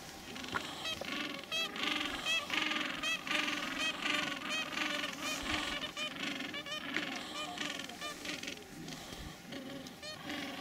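Adélie penguin colony calling: many short, pitched calls overlap and repeat without pause.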